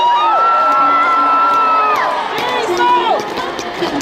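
A high voice holds one long call for nearly two seconds, with shorter calls that rise and fall just before it and about three seconds in, over a cheering concert crowd.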